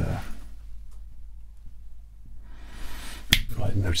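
Quiet room tone with a low steady hum, then a rising faint hiss and a single sharp click a little past three seconds in, after which a man begins speaking softly.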